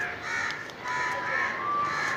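Birds calling, a run of short calls repeated a few times a second.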